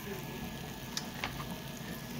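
Marinated chicken pieces sizzling in hot oil in a wok, with two short sharp clicks about a second in.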